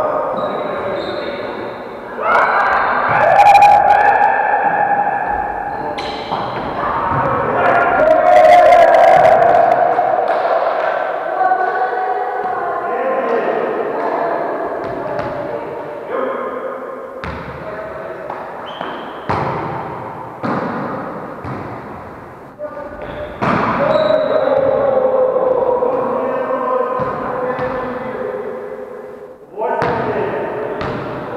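Volleyball being hit and bouncing during play: a string of sharp, echoing hits and thuds in a large gym hall, with players' voices under them.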